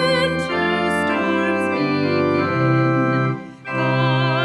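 Church organ playing held hymn chords between sung lines, after a soprano's note fades just after the start. Near the end the organ dips briefly and the singer's next line begins over it.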